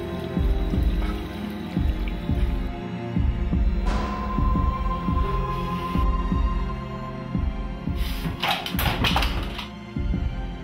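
Tense film score: low held drones under a regular low pulse beating about every two-thirds of a second, with a thin high tone held in the middle and a rushing burst of noise near the end.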